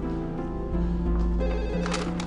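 A telephone ringing over soft background music.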